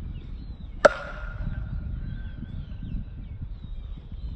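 A metal baseball bat striking a pitched ball once, about a second in: a sharp ping that rings on for about a second.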